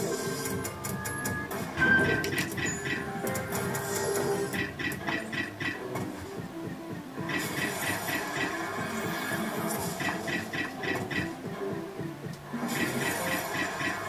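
Merkur slot machine playing its electronic free-game music and short jingles, with runs of rapid clicking as the reels spin and stop and wins are tallied.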